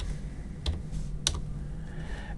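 Computer keyboard keystrokes: a few light clicks, two of them sharper and about half a second apart, over a faint low hum.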